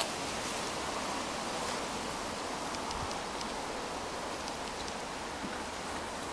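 Steady outdoor background hiss with a few faint ticks, and no clear event standing out.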